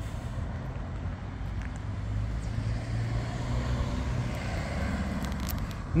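Steady low rumble of motor-vehicle noise, swelling slightly in the middle.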